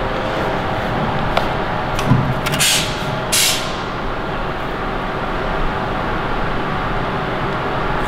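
Steady workshop background noise at a sheet-metal folding machine, with a few light metallic clicks and two short hissing bursts a little before the middle.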